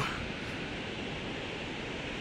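Steady rushing roar of a large waterfall, an even wash of noise with no breaks.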